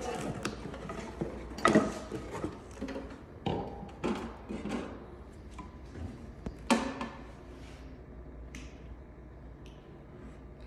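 Handling noise as one LED light bar is taken off a wooden board and another is set in its place: a series of sharp knocks and clunks with light rattling of cables, loudest about two seconds in and again near seven seconds.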